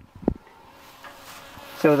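Faint, steady outdoor hiss with a couple of soft clicks at the start, then a man starts speaking near the end.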